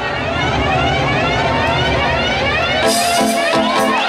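Live band music over a PA: repeated rising synth sweeps over a heavy bass, changing about three seconds in to a held chord with a bright crash.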